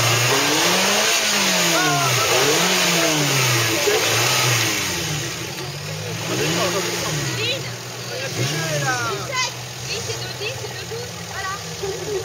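An off-road 4x4's engine revving up and down over and over as the vehicle works its way up a steep dirt mound, easing off after about five seconds. Short shouts from people come in during the second half.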